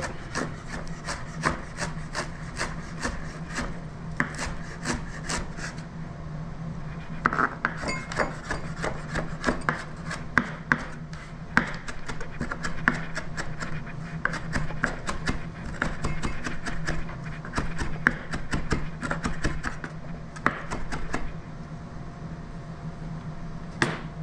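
Chef's knife chopping fresh parsley on a cutting board: a quick, irregular run of blade taps, thinning out near the end.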